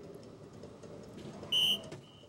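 A soft-tip dart lands in single 16 on an electronic DARTSLIVE dartboard machine, which answers with a short, loud, high electronic beep about one and a half seconds in. The hit registers as a score. Low hall murmur runs underneath.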